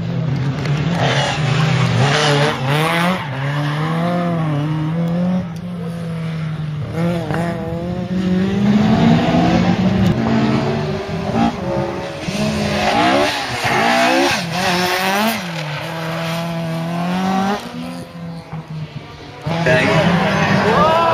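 Rally car engine revving hard, its pitch rising and falling with gear changes and throttle through the corners. It drops away briefly near the end.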